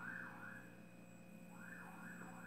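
A faint electronic siren sweeping up and down in pitch about three times a second, breaking off briefly partway through and then starting again.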